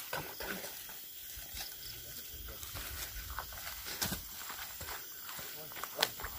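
Rustling and scattered sharp snaps of dry leaves and twigs underfoot as people walk through undergrowth, the loudest snaps about four seconds in and at the end, with faint low voices under them.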